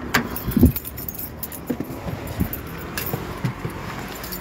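Irregular clicks and rattles of handling as someone gets into a car, with a heavier thump about half a second in.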